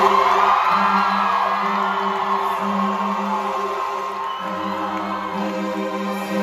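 Live band music in an arena: held synth chords carry on after the low beat drops out at the start, with the crowd cheering and whooping over them.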